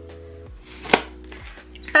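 Background music with held tones, and a single sharp plastic click about a second in as an expandable plastic drainer basket is handled.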